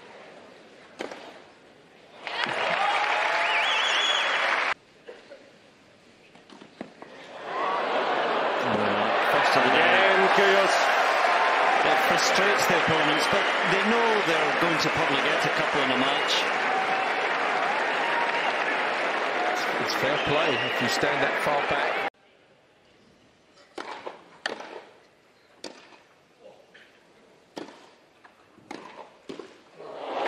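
A tennis crowd loudly talking and calling out for about fifteen seconds, then stopping abruptly. After that, near quiet broken by single sharp knocks of a tennis ball bounced and struck with rackets on a grass court.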